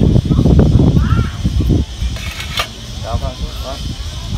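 Compost being raked and packed into a ring of clay roof tiles: dull scraping and knocking for the first two seconds, then a single sharp clack.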